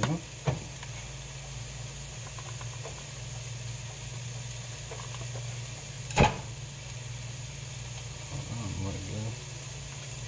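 A raw ground-beef patty is set down and pressed into a nonstick frying pan on an electric coil stove, with one sharp knock about six seconds in, over a steady low hum.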